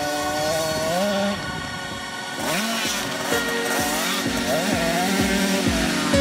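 A 50cc dirt bike engine revving up and down as it is ridden, its pitch rising and falling several times, over background music.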